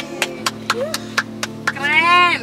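Hand claps keeping a steady beat, about four a second, while people in a car sing along; a voice swoops up and down near the end.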